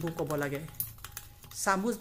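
Metal spoon clicking quickly against the bowl while beating egg and sugar together, a run of light knocks between stretches of a woman's voice.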